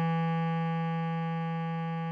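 Bass clarinet holding one long low note, written F#4 and sounding E3, steady in pitch and slowly getting quieter.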